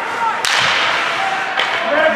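A single sharp crack about half a second in as a hockey puck is struck during play, followed by a brief wash of noise in the rink.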